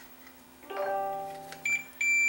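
A low steady note, held for about a second and fading away, then near the end a Fluke multimeter's continuity beeper starts a high, steady beep. The beep is the sign that the meter has found continuity between the plug's tip and the yellow wire.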